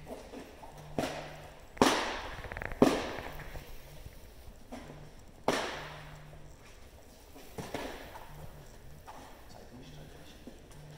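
A bite rag snapped and slapped hard against the floor while a young dog is worked on it: about five sharp cracks, the loudest two or three seconds in, each ringing briefly in a metal-walled hall.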